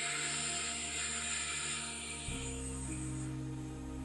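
Soft ambient background music with sustained chords, changing chord about two seconds in. Over it, a long audible breath: a rush of air that starts at once and fades away over about three seconds.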